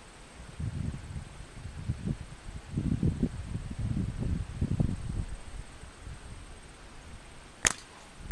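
A single sharp crack of a slingshot shot near the end, a lead ball loosed from flat rubber bands at about 100 feet. Before it, several seconds of low, uneven rumbling from wind on the microphone.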